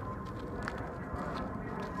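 Steady outdoor background noise: a low rumble with a faint, thin, steady tone over it.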